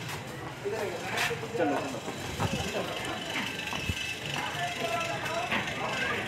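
Indistinct voices with a few knocks and thuds as a large cooking pot slung on wooden poles is carried in and set down.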